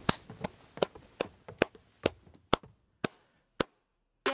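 Hand claps, about two or three a second, spacing out a little and stopping shortly before the end.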